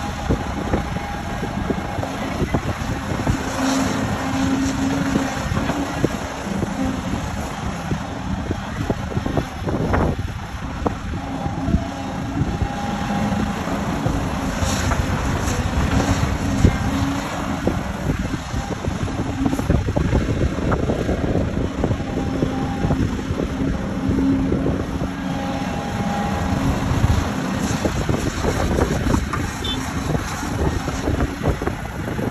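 Volvo EC750E 75-tonne crawler excavator's diesel engine and hydraulics working under load as it digs spoil and loads it into an articulated dump truck. The engine note comes and goes with each dig and swing, with occasional knocks.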